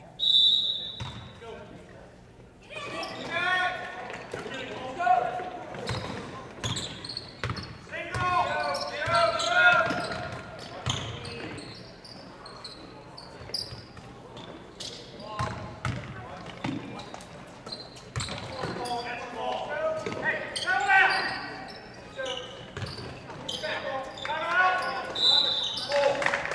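Basketball game in a school gym: a referee's whistle blows briefly at the start and again near the end, the ball bounces on the hardwood floor and players and spectators shout.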